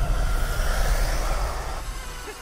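Chevrolet Colorado pickup driving past, its engine and tyre noise fading away toward the end.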